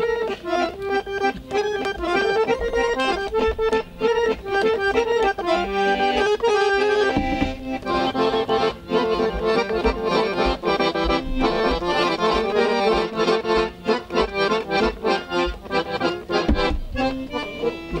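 Chromatic button accordion playing a Serbian folk tune on its own: a quick-moving melody over a regular bass beat. It is the instrumental introduction to a song, with no singing yet.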